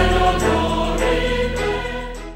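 Background music: a choir holding sustained chords, gradually getting quieter.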